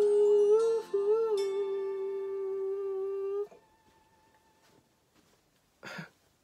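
A male singer holds a long final note into a handheld microphone, with small melodic turns early on, over a quiet backing track. The voice stops about three and a half seconds in, the backing dies away about a second later, and there is a brief knock at the very end.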